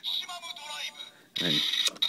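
Kamen Rider W DX Double Driver toy belt playing a short, tinny electronic sound through its small speaker with a Gaia Memory in its Maximum Slot, followed by a spoken "and" near the end.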